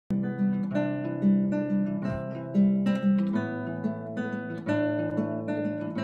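Solo acoustic guitar playing a chord progression, its notes plucked in quick succession.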